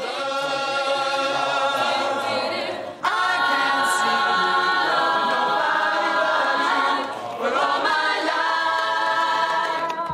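Mixed male and female voices singing a cappella in five-part harmony, holding long chords. The singing breaks off briefly about three seconds in and again about seven seconds in, then resumes.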